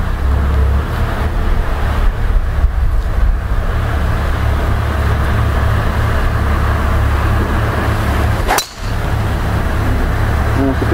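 Steady low wind rumble buffeting the microphone, then a single sharp crack near the end as a driver strikes a golf ball off the tee.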